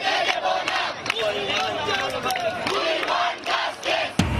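A large crowd of student protesters, many voices shouting at once.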